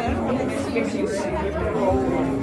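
Indistinct chatter: several voices talking over one another.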